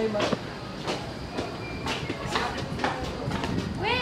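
Footsteps of several people walking down concrete stairs, irregular knocks about every half second, over chattering voices, with a short voiced call near the end.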